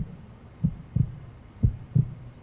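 Heartbeat sound effect: low, muffled lub-dub thumps in pairs, repeating about once a second, played as a suspense cue.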